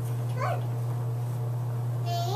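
A toddler's brief high-pitched squeal about half a second in, over a steady low hum.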